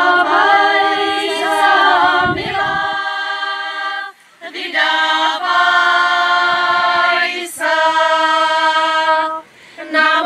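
Women's folk choir singing unaccompanied, in long held phrases, with short breaths taken about four seconds in and again just before the end.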